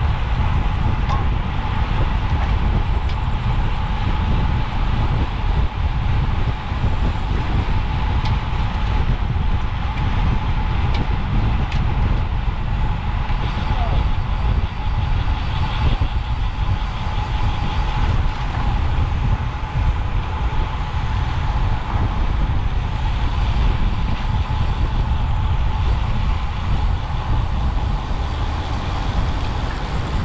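Wind rushing over the microphone of a camera on a road bike ridden fast, a loud steady rumble, with a thin steady whine running under it.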